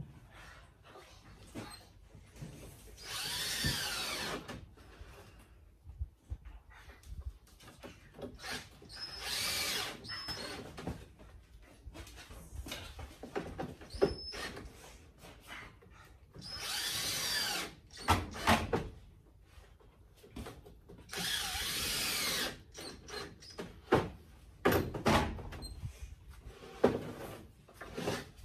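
Cordless drill driving screws into plywood: four separate runs of about a second each, the motor's whine rising and falling as each screw goes in. Short clicks and knocks of handling come between the runs.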